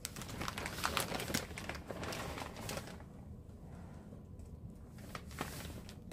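Plastic packaging crinkling and rustling as items are rummaged through, busiest in the first three seconds, then quieter with a few scattered rustles.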